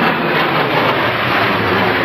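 Jet engines of a four-aircraft aerobatic formation passing overhead: a loud, steady rushing noise with no distinct tones.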